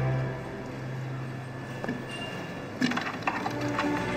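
Background music fades out, leaving a quiet stretch with a few light clicks and clinks of small parts being handled on a workbench, most of them a little before three seconds in; the music comes back at the end.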